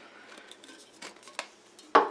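Small metal tin being handled: faint scraping and a few light clicks as the lid is worked. A sharper knock at the very end as the tin is set down on a wooden table.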